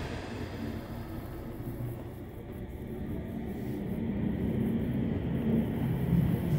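Inside a Sendai Subway Namboku Line car running between stations: a steady low rumble of wheels on rail and running gear, growing louder in the second half.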